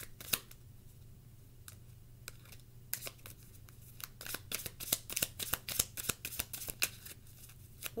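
A tarot deck being shuffled by hand: a few scattered card taps at first, then about five seconds of quick, dense shuffling clicks.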